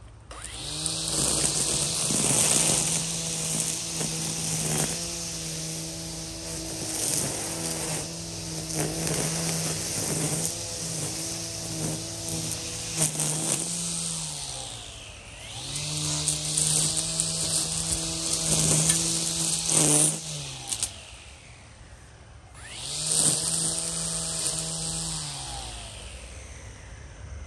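EGO Power+ battery string trimmer running in three bursts, its motor whining steadily and the line whirring through weeds and grass, with scattered ticks. Each run winds up at the start and the pitch falls away as the trigger is released.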